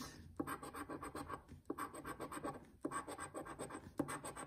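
A coin-shaped scratcher token scraping the coating off a scratch-off lottery ticket in quick, rapid strokes. The scratching comes in three runs, with short breaks about a second and a half and about three seconds in.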